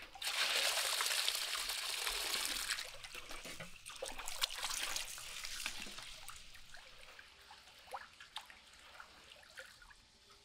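Rice and water poured from a bowl into a large aluminium basin of water, a loud splashing pour for about three seconds. Then uneven sloshing as a hand swirls and washes the rice, fading to light drips and trickles near the end.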